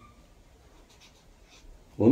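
Faint strokes of a felt-tip marker writing on notebook paper.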